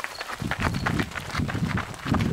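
Boots running on a gravel track: quick, irregular steps, about four a second.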